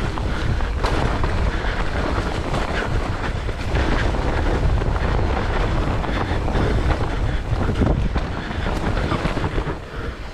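Mountain bike descending a dirt forest singletrack at speed: wind rushing over the microphone and a steady low rumble of tyres on the trail, with scattered sharp knocks and rattles from the bike over bumps.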